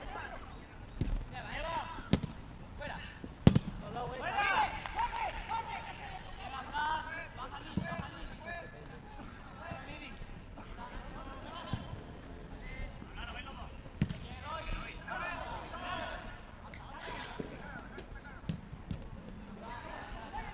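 Footballers shouting to each other across the pitch, with a few sharp thuds of the ball being kicked, the loudest about three and a half seconds in.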